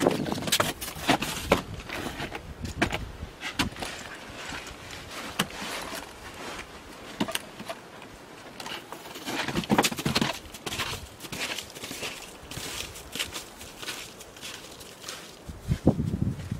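Snowshoe footsteps crunching and sinking into soft, melting snow, an uneven run of steps, with knocks and rustles of gear being handled near the start.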